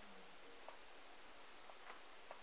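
Near silence: a steady low hiss with three or four faint clicks, from hands fixing hair into a messy bun with bun pins.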